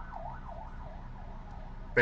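A siren wailing, its pitch sweeping up and down about twice a second.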